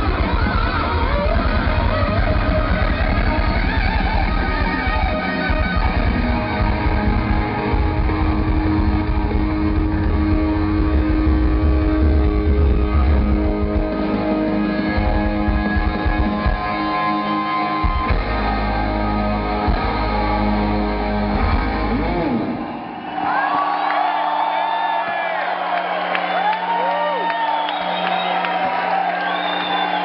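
Live rock band with loud lead electric guitar playing a solo. About 23 seconds in, the drums and bass stop, leaving long, bending electric guitar notes ringing out at the close of the number.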